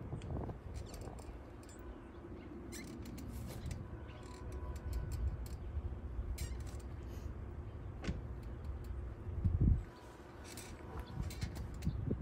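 Outdoor ambience of low wind rumble on the microphone, with scattered faint clicks and one dull low thump about three-quarters of the way through.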